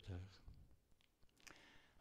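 Near silence: room tone with a few faint clicks about midway, after a man's voice trails off at the very start.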